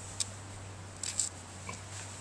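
Faint handling noises as a small rocket motor is pushed into soft ground beside a stake: a single click, then a short scrape about a second in, over a steady low hum.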